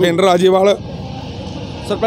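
A man's voice for under a second, then the steady noise of road traffic.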